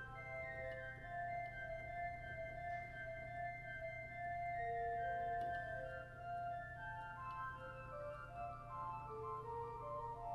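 Pipe organ playing a slow piece on the manuals alone, without pedals: a melody of held notes over sustained chords in the middle and upper range, with no bass line.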